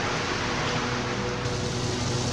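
Steady, even hiss of outdoor noise with a faint steady hum beneath it.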